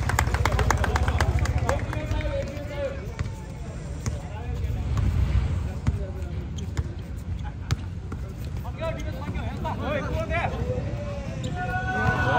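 Basketball bouncing on a concrete court amid players' and spectators' shouts, with a flurry of sharp clicks in the first two seconds. Right at the end a referee's whistle starts to blow.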